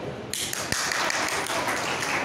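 Applause from a crowd of people clapping, breaking out suddenly about a third of a second in and continuing as a dense patter of many claps.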